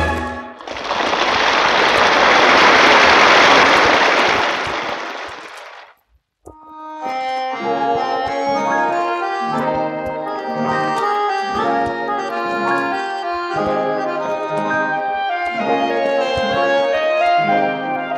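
Audience applause at the end of a song on a 1961 mono LP, lasting about five seconds and fading out, then a short silence. About six and a half seconds in, the next track begins: music by a male vocal quartet.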